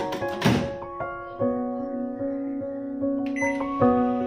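A convection microwave oven's door is shut with a click and a thunk just after the start, over steady background piano music.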